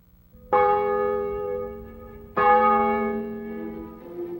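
A church bell struck twice, about two seconds apart, each stroke ringing and slowly fading over a faint steady low tone. Other notes enter near the end.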